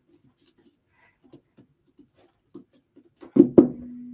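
Faint small clicks and soft handling sounds, then near the end a sudden loud vocal sound with a sharp click, running into a woman's voice held on one steady note that fades away.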